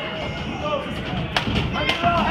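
Two sharp thumps on a wrestling ring's mat, one about a second and a half in and another just before the end, as a wrestler moves across the ring. Voices call out over them.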